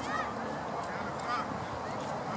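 Short honking bird calls, one right at the start and another a little past halfway, over a steady outdoor background hiss.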